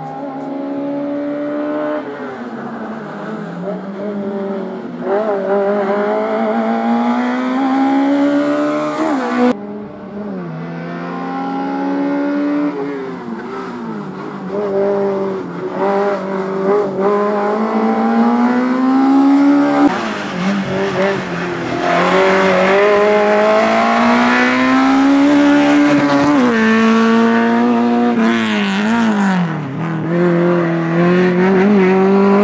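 A small classic saloon car's engine revving hard in a slalom run, its pitch repeatedly climbing under acceleration and dropping as the driver lifts and shifts. The sound jumps abruptly twice.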